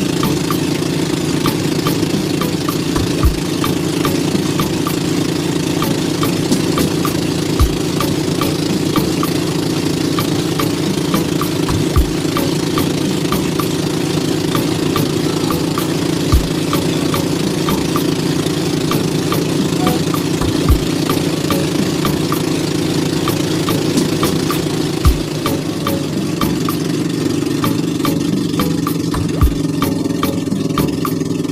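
A motor engine running steadily at an even speed, with a dull low thump about every four seconds.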